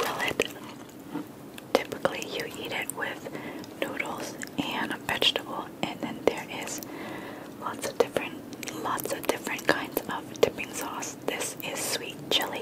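Close-miked whispering, scattered with small sharp clicks and taps from fingers handling food.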